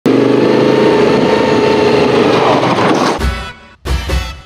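Adventure motorcycle engine running under way on a dirt track, with wind noise and its pitch shifting a little near the end. About three seconds in it cuts off abruptly and music with a heavy bass beat begins.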